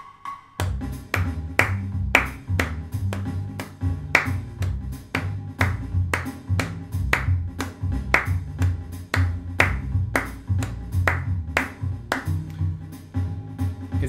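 Hand claps marking dotted quarter notes over a backing track of a bass line and drums. The claps fall as a second pulse laid across the beat of the track.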